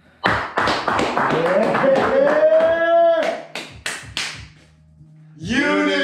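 Two men clapping and slapping hands in a rapid flurry while one lets out a long, rising whoop. A few more sharp claps follow, and a second drawn-out shout starts near the end.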